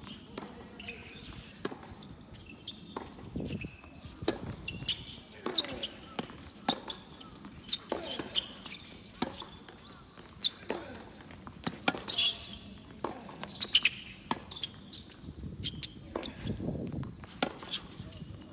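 Tennis ball bounced on a hard court before a serve, then a rally: sharp racket strikes and ball bounces about once a second.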